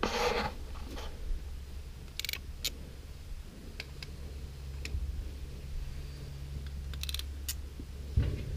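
A steady low rumble with a few light clicks and ticks scattered through it, and a short quick run of clicks about seven seconds in.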